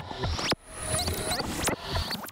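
A produced sound-effect sequence of quick squeaky pitch glides, clicks and swishes. It breaks off about half a second in and the same run of sounds starts again.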